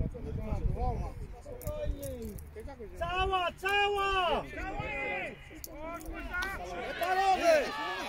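Voices shouting across a football pitch during play: long, drawn-out calls, loudest from about three seconds in and again near the end.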